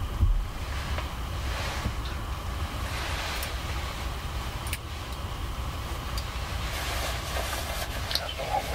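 Steady low wind rumble on the microphone with a light hiss of outdoor air, and a brief thump just after the start.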